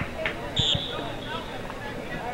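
A short, sharp blast on a referee's whistle a little over half a second in, over scattered distant voices on the field.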